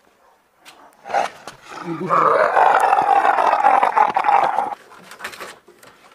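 A person's long, deep, growling laugh, loud and rough like a roar. It starts about a second in and breaks off before the fifth second.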